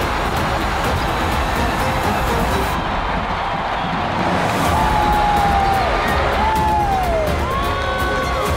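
Background music over a basketball arena crowd cheering. The sound turns briefly muffled, its highs cut away, about three seconds in.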